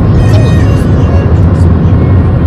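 Loud steady low rumble of a car moving at road speed, heard from inside the cabin, with music playing over it.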